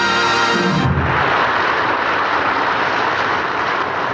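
The song's final held chord ends about a second in, followed by a crowd of listeners applauding steadily.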